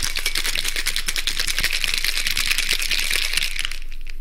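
Ice rattling fast and steadily inside a cocktail shaker as a drink is shaken.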